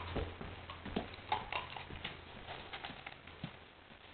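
A three-month-old English Setter puppy's claws clicking on a wooden floor as she walks about: light, irregular ticks.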